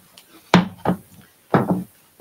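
A sheet of cardstock being bent and flexed by hand, giving sudden sharp papery snaps in two pairs about a second apart.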